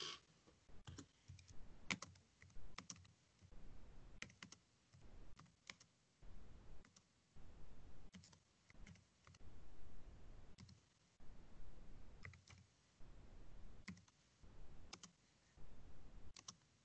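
Faint typing on a computer keyboard: irregular clusters of keystrokes with short pauses between them.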